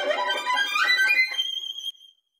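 Violin playing a fast passage of notes rising in pitch, ending on a high note that rings briefly and dies away near the end.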